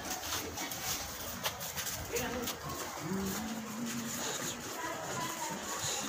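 Background chatter of a gathering crowd, with one long drawn-out call about three seconds in.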